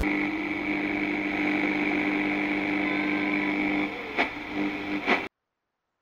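A car engine running with a steady hum. A few sharp clicks and dips come about four to five seconds in, then the sound cuts off suddenly.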